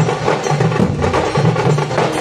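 A drum troupe playing large barrel drums with sticks, in a fast repeating rhythm of deep beats and sharp strikes.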